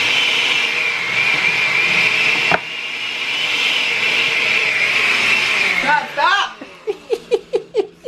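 Countertop blender running, its motor whine wavering slightly as it chops the burger mix. The level dips briefly about two and a half seconds in, and the blender cuts off about six seconds in.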